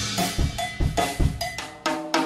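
Jazz drum kit played in a quick run of strikes, about five a second, with cowbell hits among snare and bass-drum strokes.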